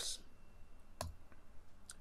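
A sharp computer mouse click about a second in, then a fainter click near the end, over quiet room tone.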